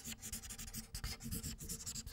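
Marker pen writing capital letters on a white surface, a quick, irregular run of short pen strokes.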